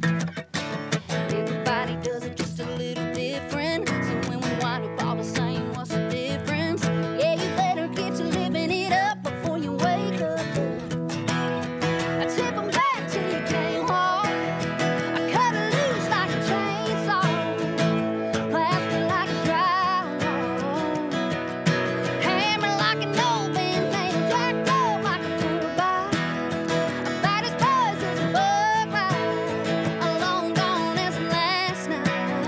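Live country song on two strummed acoustic guitars, with a woman singing lead over them.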